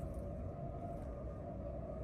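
Steady background hum with a faint, constant whining tone: indoor room tone from some appliance or electrical source.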